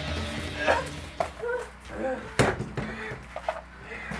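Background music fading out in the first second, then a few short vocal sounds and one sharp crack about two and a half seconds in, the loudest sound here, amid scattered smaller knocks.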